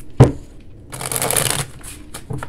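A single knock, then a deck of oracle cards being shuffled in a quick riffle lasting about half a second.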